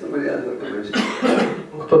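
A person coughs twice in quick succession about a second in, between stretches of speech.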